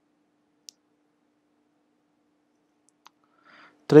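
Near silence with a faint steady hum, broken by two small sharp clicks, one under a second in and a fainter one about three seconds in; a man's voice starts right at the end.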